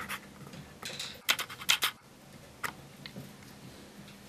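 Short scratches and clicks of a bit brace and auger bit being set and turned against a wooden Windsor chair arm rail, with a quick cluster of them about a second and a half in.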